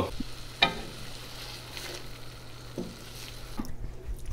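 Sliced onions sizzling gently in a stainless steel sauté pan on a gas stove, with a single sharp clink about half a second in and a few light knocks later.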